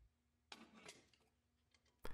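Near silence, with two faint short clicks about half a second and about a second in.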